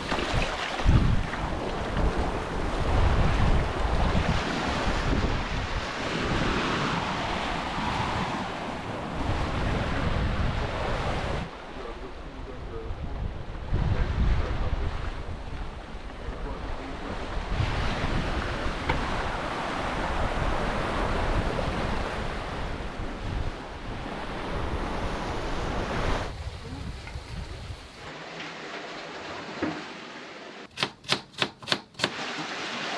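Sea water rushing and splashing along the hull of the Exploration 52 sailing yacht under sail, with wind buffeting the microphone in gusts. The sound shifts abruptly several times and is quieter in the last couple of seconds.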